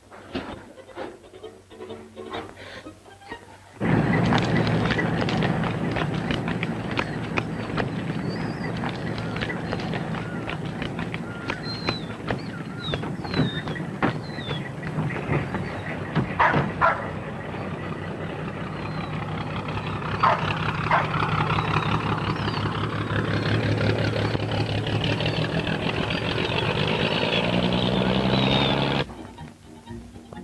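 A small motor boat's engine running steadily alongside the quay steps, a low hum under a dense noise of engine and water, with a few sharp knocks and short high squeaks. It starts suddenly about four seconds in and stops suddenly near the end; before it there is only faint music.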